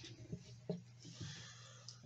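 Faint handling noise of a small folded paper slip being drawn from a cardboard box and opened: a few soft clicks and rustles over a steady low hum.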